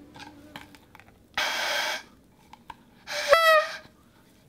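A paper party blower (New Year's noisemaker) blown twice: a short raspy blast about a second and a half in, then a louder, clearer tooting note that swoops up and holds near the end.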